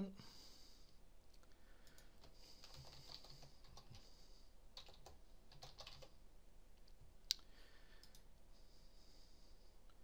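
Faint computer keyboard typing and mouse clicks, in scattered clusters with one sharper click about seven seconds in, as a search is typed and links are clicked in a web browser.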